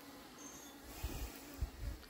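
Faint, steady buzzing of honeybees flying around the hive, with a few soft low bumps near the end.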